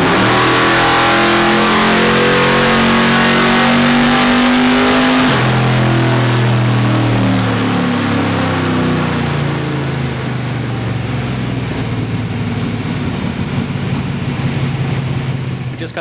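Ford 289 small-block V8 in a Mercury Comet, running on a Holley Terminator EFI throttle body, making a full-throttle baseline pull on a chassis dyno. The revs climb, the pitch drops suddenly about five seconds in and climbs again, then falls away and settles as the pull ends.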